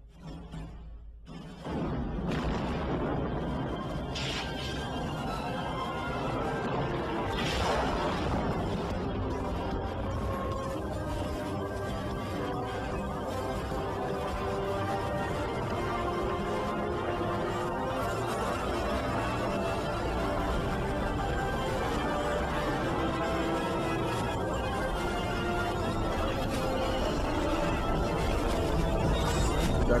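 Many movie studio logo intros played over one another at once: a dense jumble of overlapping music, which jumps in loudness about two seconds in, with sudden crashes about four and eight seconds in.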